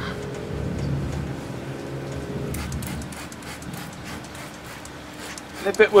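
A steady engine hum runs for the first two and a half seconds. Then a trigger spray bottle squirts seasoning oil onto the smoker in a quick run of short hisses.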